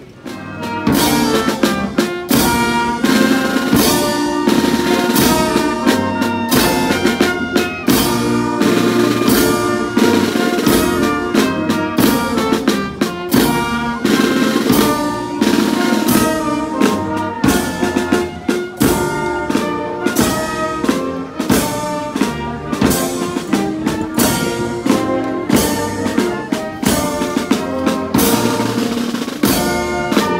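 Street marching band of saxophones, brass, snare drums and bass drum playing a march with a steady drum beat, striking up suddenly about half a second in.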